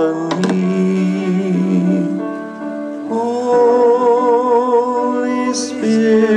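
A slow song with a singer holding long, wavering notes over instrumental accompaniment, moving to a new, higher phrase about halfway through.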